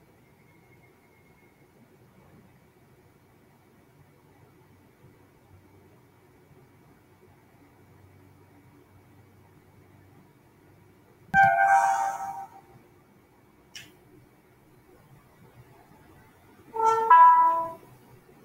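Moorebot Scout robot's built-in speaker playing short electronic start-up sounds as it initializes after being switched on: a first musical jingle about two-thirds of the way in and a second near the end, with a faint click between them.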